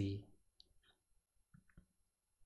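The end of a spoken word, then a few faint, scattered clicks.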